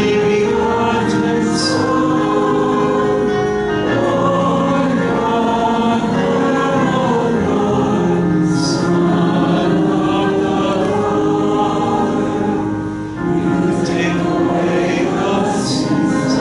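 Choir singing a Mass hymn in phrases of held notes, with a short break between phrases about thirteen seconds in.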